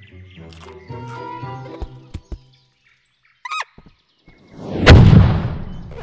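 Animated-film soundtrack: orchestral score for the first two seconds or so, then a pause broken by a short squeak. Near the end comes a loud sudden impact that dies away over about a second.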